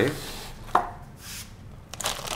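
A single sharp knock about a third of the way in as a cardboard box is pushed aside on a tabletop, followed by faint handling noise of an anti-static plastic parts bag.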